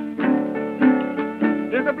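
Solo acoustic guitar playing the intro of a Memphis country blues, a run of picked notes, on an old recording that sounds narrow and thin. A man's singing voice comes in near the end.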